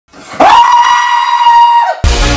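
A man screaming: one long, loud, high scream held on a steady pitch, rising as it starts and dropping off at the end.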